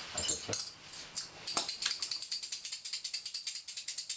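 Small metal bells shaken in a fast, even jingle, about ten strokes a second, starting about one and a half seconds in after a few light clicks.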